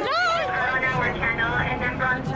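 Raised voices of people shouting close by: one high-pitched yell in the first half second, then several voices over a low background rumble.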